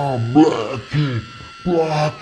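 A steady high electric buzz runs beneath a man's wordless vocal exclamations and stops at about the end.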